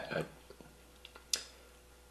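Quiet room tone after a brief spoken 'uh', with one short sharp click about a second and a half in and a couple of fainter ticks.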